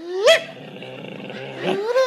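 Two short dog-like vocal yelps from a person's voice: the first sweeps sharply up in pitch, the second, about a second and a half later, rises and then falls.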